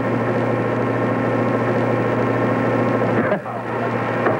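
A steady low hum with a busy, murmuring texture above it, dipping briefly about three seconds in.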